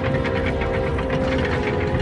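Sound effect of a wooden rope-and-pulley hoist turning: a low grinding rumble with a rapid run of clicks, over held orchestral notes.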